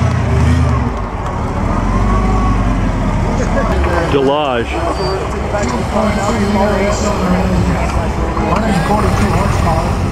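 Vintage touring car's engine running at low speed as the car rolls slowly past, a steady low rumble, with people talking all around.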